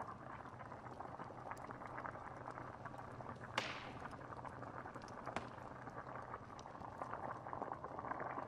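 Stew bubbling steadily in a cauldron, with scattered small pops and crackles of a wood fire; one sharper, louder pop about three and a half seconds in.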